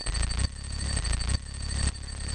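Electronic glitch sound effect for an animated logo sting: a harsh buzz with a deep bass undertone and thin, steady high tones, cutting out briefly three times.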